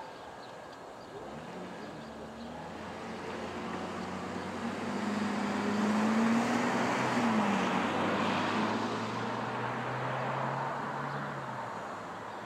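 A road vehicle passing by: its engine and tyre noise builds over several seconds, is loudest about six seconds in, then fades, the engine note dropping in pitch about seven seconds in as it goes past.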